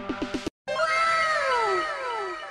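A quick, evenly repeating pitched beat stops abruptly about half a second in; after a brief gap comes a long, drawn-out cat meow that falls in pitch, with several overlapping falling tones.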